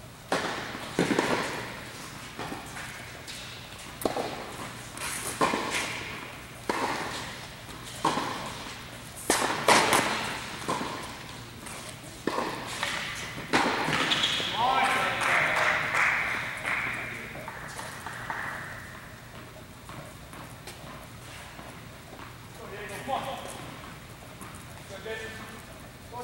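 Tennis balls being struck and bouncing on a hard court, sharp echoing pops roughly once a second, in the reverberant hall of an indoor tennis centre. A voice calls out in the middle.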